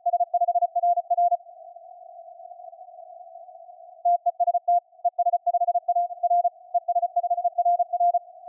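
Morse code (CW) from an amateur radio transceiver in a contest exchange: a single-pitch tone keyed in dots and dashes, heard through a narrow CW filter with band hiss between the characters. There is a short run of code, about two and a half seconds of hiss only, then a longer run of code from about four seconds in.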